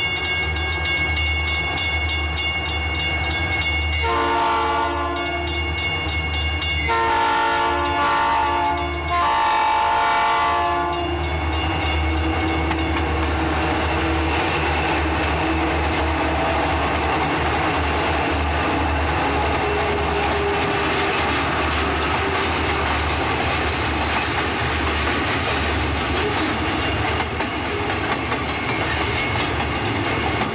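A train horn sounds three blasts a few seconds in, each a chord of several tones. The train then rumbles past with a steady low engine drone and clattering wheels on the rails.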